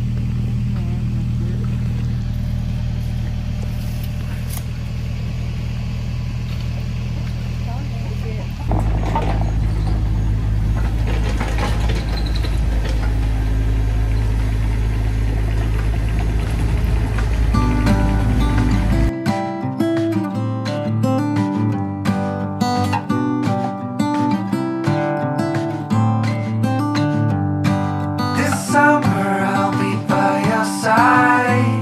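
Takeuchi TB240 mini excavator's diesel engine running steadily at work, louder after a sudden change about nine seconds in. From about 19 seconds in, strummed acoustic guitar music takes over.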